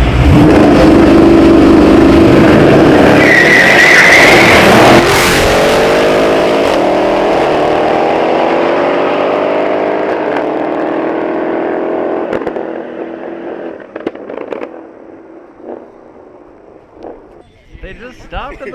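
Two cars, a Mercedes-AMG E63 S with its twin-turbo V8 and an Audi, at full throttle in a street race. The engine note is loud and steady for the first few seconds. Its pitch then climbs again and again through gear changes as the sound fades, dying away about fourteen seconds in.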